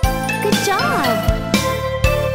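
Children's-song backing music with a steady beat, over which a small handbell rings. About half a second in, a short wavering cartoon voice sound rises and falls.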